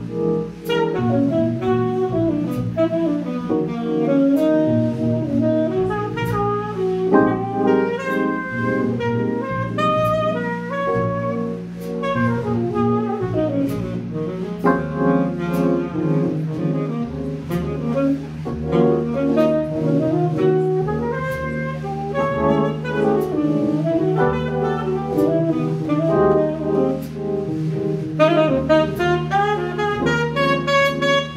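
Tenor saxophone improvising a jazz solo in flowing runs over piano comping, walking double bass and drums keeping time on the cymbals, played by a live jazz quintet.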